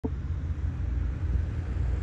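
Helicopter running on the airport apron, heard from a distance as a steady low rumble.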